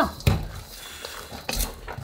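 A wooden spatula stirring cooked red adzuki beans in a large stainless steel bowl, scraping and knocking against the metal, with two sharper knocks. The beans are being stirred while hot to dry them out for bean coating.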